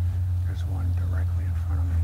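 Quiet, muffled voices speaking low, close to whispering, over a steady low rumble.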